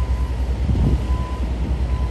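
Low, steady rumble of heavy machinery on a construction site, with a faint steady high tone running over it.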